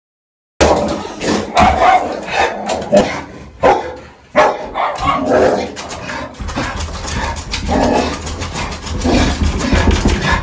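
A pit bull barking and growling as it lunges and scrabbles on a leash, with sharp knocks among the calls. The sound cuts in abruptly about half a second in.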